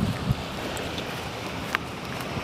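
Beach ambience: steady noise of wind and gentle Gulf surf, with a small click about three-quarters of the way through.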